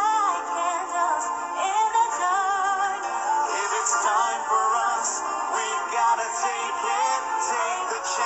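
Soundtrack song: a singer's melody with vibrato over steady instrumental backing.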